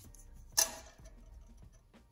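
One sharp metallic clink with a brief ring, about half a second in, as a steel rule is knocked against the steel truck frame.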